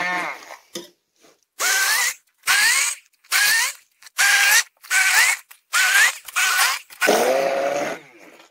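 Handheld immersion blender run in short pulses in a pot of cooked greens: about eight bursts roughly a second apart, each a whine that rises as the motor spins up. The last run, near the end, is longer and lower-pitched.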